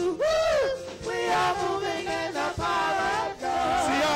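Gospel praise team singing, with a male lead voice over the choir, in sung phrases broken by short breaths. About a quarter second in, a voice swoops up and back down.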